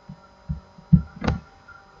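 About four soft, low thumps within two seconds, the last with a sharp click, over a faint steady hum.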